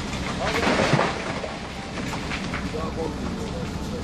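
A low rumble from the collapsing tunnel, rock and debris coming down inside it, with a louder rushing surge about a second in. Faint men's voices can be heard under it.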